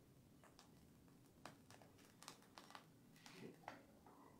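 Near silence, with faint scattered soft clicks and crinkles from a plastic piping bag being squeezed as whipped cream frosting is piped onto a cake.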